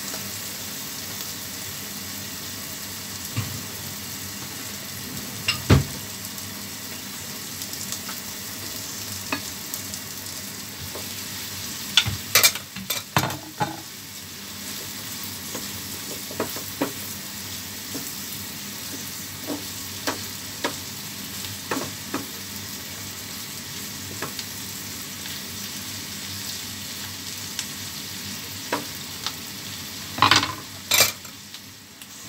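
Prawns and green chillies sizzling in a frying pan, with a wooden spatula knocking and scraping against the pan as they are stirred. The knocks come at scattered moments, the loudest about six seconds in and a cluster around twelve to thirteen seconds in.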